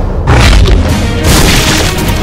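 A deep boom about a third of a second in, then a loud crashing noise near the end, both over background music.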